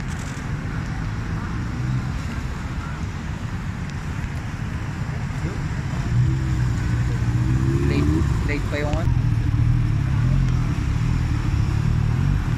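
An engine idling steadily, getting louder about halfway through, with people's voices in the background and one voice rising over it briefly.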